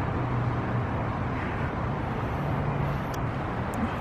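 Steady outdoor background noise with a faint low hum, like distant traffic, and two small clicks near the end.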